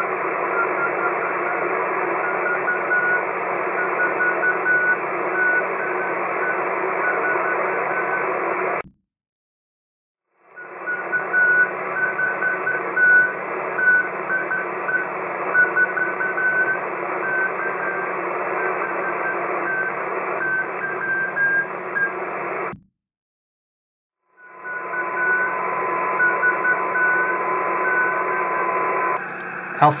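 Morse code from a one-transistor crystal-controlled CW transmitter on the 40 m band, heard through distant web SDR receivers: a thin keyed tone sending dots and dashes over steady receiver hiss. The audio breaks into three clips with short silences between them, and in the last clip a second, steady tone sounds under the Morse.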